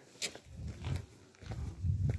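Footsteps at a walking pace: soft low thumps about every two-thirds of a second, with a sharper click a quarter second in.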